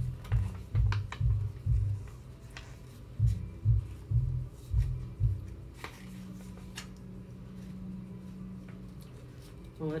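Packaging being handled at a table: irregular soft thumps and knocks with a few light clicks and crinkles, followed by a low steady hum for about three seconds.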